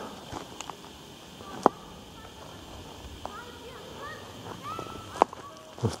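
Low outdoor hush with a few short, rising-and-falling bird chirps in the second half and two sharp clicks, one a little under two seconds in and one near the end.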